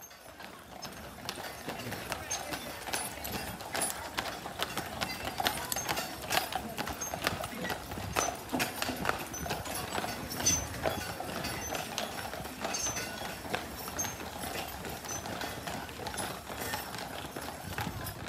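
Horses' hooves clip-clopping on a paved road, an irregular run of hoof strikes, with people talking in the background.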